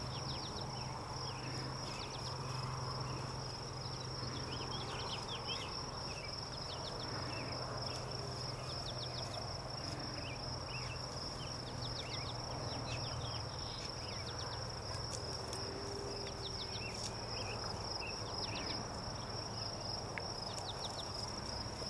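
A steady, high, unbroken insect trill, cricket-like, with many short quick chirps scattered over it.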